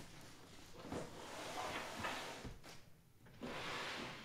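Hard plastic graded comic slabs being stacked and slid across a wooden tabletop: faint rubbing and sliding, with a few light knocks as the cases meet, and a longer slide near the end.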